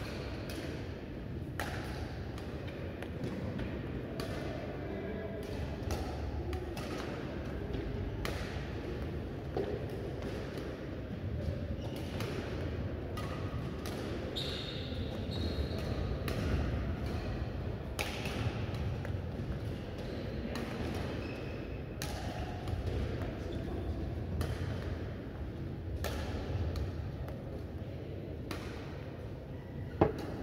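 Badminton rally: shuttlecock struck by rackets back and forth, a sharp crack every second or two with a hall echo, over a steady low hum.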